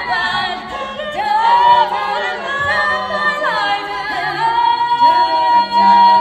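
Women's barbershop quartet singing a cappella in close four-part harmony, with swooping glides in pitch about a second in and again past the middle, settling into a long held chord near the end.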